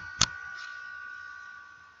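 A single sharp computer click about a quarter second in, followed by a faint, steady two-note whine that fades away.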